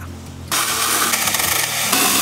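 Greencut 21 V cordless mini chainsaw cutting through a bougainvillea branch: a loud, steady buzz that starts suddenly about half a second in.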